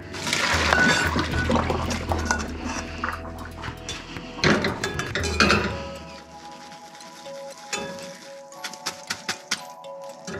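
Hot water and rice noodles poured from a saucepan through a metal mesh strainer into a stainless-steel sink: a rushing splash for about the first six seconds. Then several sharp metal clinks as the strainer knocks against the pan, over background music.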